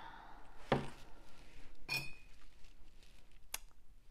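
A paintbrush knocking and clinking against a hard container: a knock under a second in, then a clink with a short ringing tone near the middle, and a faint tick near the end.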